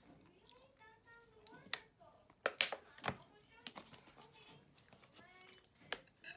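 Thin plastic water bottle being handled, giving a scatter of sharp clicks and crackles, several of them in quick succession in the middle.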